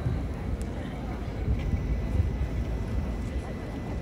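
A low, uneven rumble of outdoor background noise with a faint murmur of voices; no music is playing yet.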